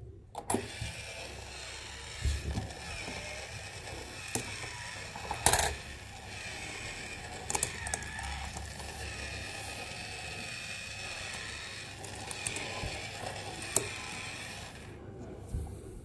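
Face-bank toy's small motor and plastic gears running as its mouth works, with a wavering whine and a few sharp clicks, the loudest about five and a half seconds in; the running stops shortly before the end.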